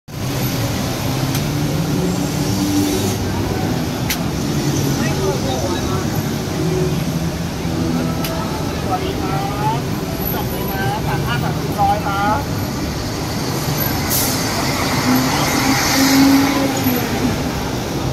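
Busy street ambience: vehicle engines running with a steady low rumble, mixed with people's voices talking nearby, clearest about halfway through.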